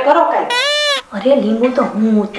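Women's speech, broken about half a second in by a single high-pitched cry about half a second long, rising and then falling in pitch, with speech resuming right after.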